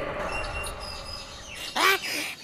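Quiet cartoon soundtrack tones fading, then near the end a single short, loud croak-like call from a cartoon frog, its pitch bending up and down.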